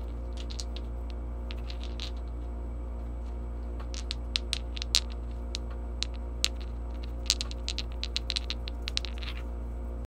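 Small smooth stones clicking and knocking together in a hand: scattered light clicks, then two quick clusters of clicks around the middle and near the end, over a steady low electrical hum.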